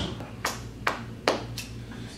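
Four sharp taps in a steady rhythm, about two and a half a second, over a low steady hum.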